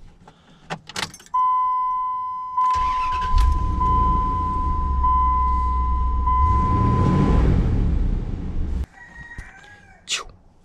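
Keys clicking in the ignition and a steady dash warning chime, then the 2003 Dodge Ram 1500's 4.7-liter V8 cranks, starts and runs. It revs briefly, then the sound cuts off suddenly near the end.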